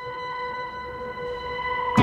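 Electronic keyboard holding a soft, sustained chord of a few steady high notes, a quiet pad between songs. A fuller accompaniment starts right at the end.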